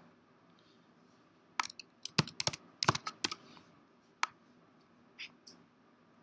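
Keystrokes on a computer keyboard: about ten irregular, separate key taps that begin about one and a half seconds in.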